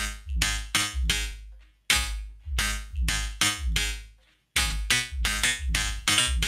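Live-looped beatbox track from a loop station: layered mouth-made drums and pitched vocal layers over a deep sub-bass, keeping a steady beat. The loop cuts out briefly about two seconds in and again near the five-second mark before coming back in.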